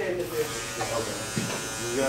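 Electric hair clippers running with a steady buzz, with faint voices over them.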